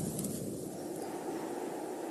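Steady, even background noise like outdoor wind ambience, with no distinct events.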